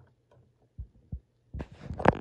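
Handling noise on a handheld phone's microphone: two soft, low thumps about a second in, then a louder rubbing rustle near the end.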